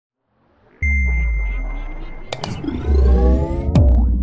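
Electronic intro sting for a show's logo: about a second in, a sudden deep bass hit and a held high ping, followed by rising sweeps and a couple of sharp clicks.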